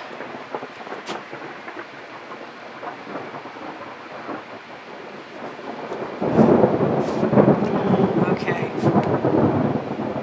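Thunder rumbling loudly, starting suddenly about six seconds in and rolling on unevenly for about four seconds.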